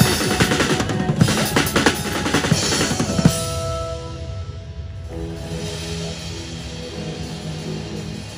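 Acoustic drum kit played in a fast, dense fill over backing music, ending on one strong hit about three seconds in. After that the drums stop and only the backing music's held chords carry on, changing chord about five seconds in.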